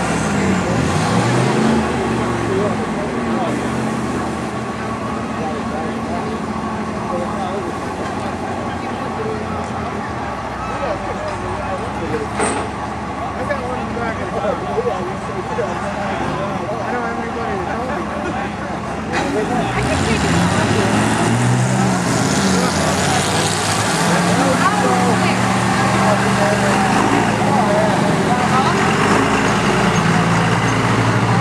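Diesel pickup engine idling while hooked to a pulling sled, then revving up about two-thirds of the way through as the pull starts and running loud at high revs to the end.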